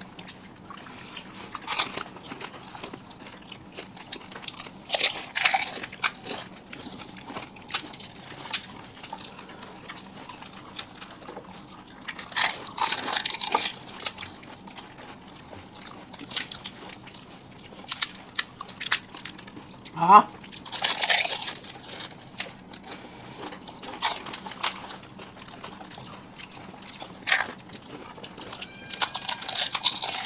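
Close-up eating of fuchka (pani puri): hollow fried puri shells cracking and crunching as they are poked open and bitten, with wet bites of the water-filled puris, in irregular bursts, the longest a few seconds in, about halfway and about two-thirds through.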